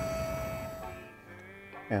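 A steady high-pitched electrical whine over a hum from a DC fast charger, cutting off about a second in. Faint background music follows.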